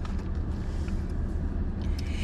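Parked car's engine idling, a steady low rumble heard from inside the cabin.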